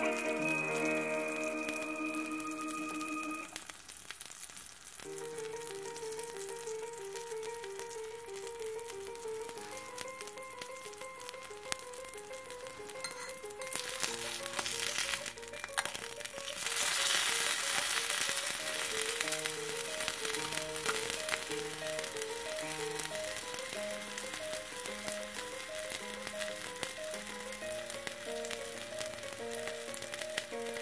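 Background music with a simple melody over a small steak sizzling in a miniature frying pan. The sizzle grows louder about halfway through, as the steak is lifted and turned with a tiny spatula.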